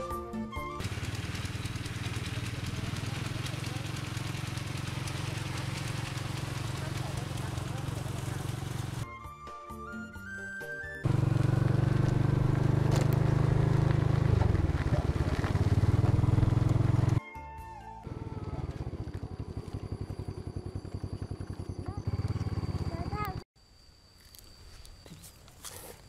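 Motorbike engine running at road speed, with wind buffeting the microphone, in several short clips joined by abrupt cuts; the loudest clip comes in the middle. Brief snatches of music sit between the clips, about nine seconds in and again near eighteen seconds.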